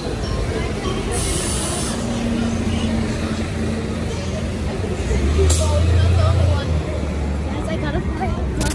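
Busy city street: steady traffic noise with faint voices of passers-by, a brief hiss about a second in, and a louder low rumble from passing traffic about five seconds in.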